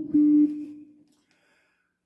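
Spectrum electric guitar: a final plucked note rings out at one steady pitch and dies away by about a second in.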